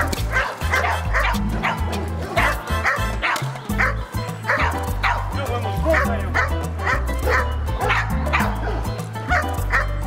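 A dog barking over and over, about two barks a second, over background music with a steady bass line.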